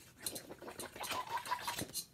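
Scratchy rustling and clicking of hands and a jacket sleeve rubbing right against the camera's microphone.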